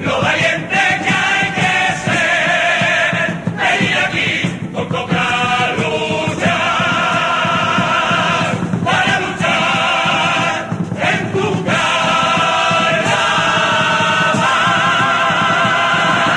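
Carnival comparsa chorus singing in harmony with its accompaniment, the closing phrases of its presentación, settling into long held notes near the end.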